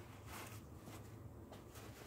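Quiet room hum with a few faint, short rustles of a paper towel being picked up by a gloved hand.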